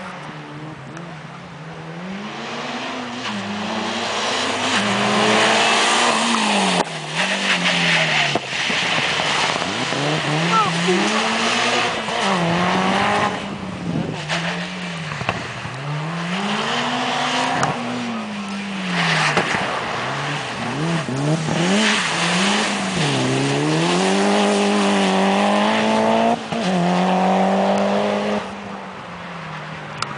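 Mitsubishi Lancer Evo IX's turbocharged four-cylinder engine driven hard, revving up and dropping back again and again, with abrupt breaks at gear changes and lifts off the throttle. It grows louder over the first few seconds as the car comes closer.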